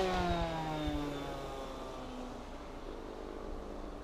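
Small propeller plane flying past overhead: its engine note drops in pitch as it goes by and then fades steadily as it flies away.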